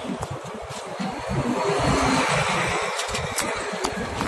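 Busy city street traffic noise. A vehicle passes and swells in the middle, with a few sharp ticks near the end.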